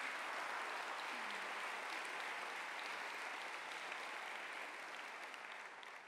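Audience applauding, the clapping thinning out and fading away toward the end.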